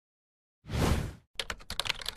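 Video-intro sound effects: a short, deep whoosh about half a second in, then a rapid run of keyboard-typing clicks as a line of text types onto the screen.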